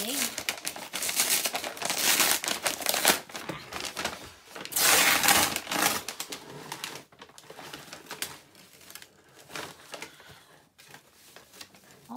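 Kraft paper bag crinkling and rustling as it is unrolled and opened by hand, loudest for about a second and a half some five seconds in, then fainter, scattered rustles.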